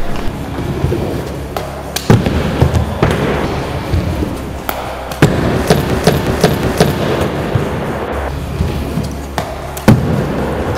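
Background music with a steady beat, over a stunt scooter's wheels rolling on a wooden ramp. Sharp thuds land about two seconds in and again right at the end.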